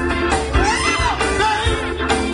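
Live band music: horns, drums, bass and keyboard playing a steady groove, with a singer's voice sliding up and down over it.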